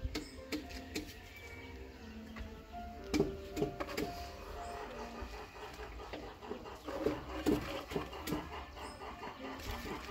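Pieces of dry firewood knocking lightly as they are laid by hand into a cinder-block wood-fired stove, a scattering of short knocks. Faint music with held notes plays underneath.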